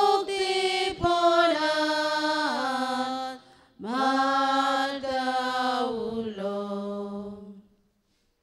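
A solo voice singing a slow prayer chant in two long, held phrases, each stepping down in pitch, with a short breath between them and the singing ending just before the close.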